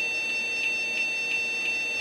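A DOS PC's internal speaker beeping continuously in one steady high-pitched tone, with a slight pulse about three times a second. It is the sign that ScanDisk has failed on a system made unstable by the active Barrotes virus payload.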